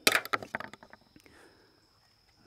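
Handling noise: a quick string of clicks and knocks, loudest at the start and dying away within about a second.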